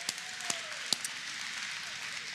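A congregation clapping: a steady patter of applause, with three sharper claps close to the microphone in the first second.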